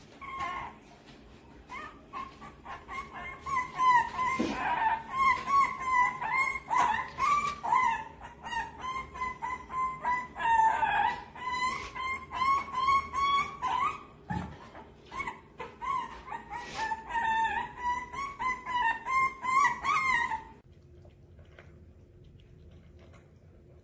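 Shih Tzu puppy, about 45 days old, barking in a long run of high-pitched yips, two or three a second, which stop suddenly near the end.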